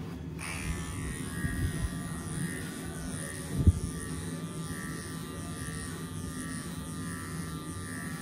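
Cordless electric horse clippers running steadily while they trim long guard hairs on a horse's hind leg. There is a single sharp knock about halfway through.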